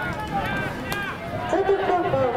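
Several voices shouting and calling out over each other across an open football field. A louder group of voices joins in past the middle.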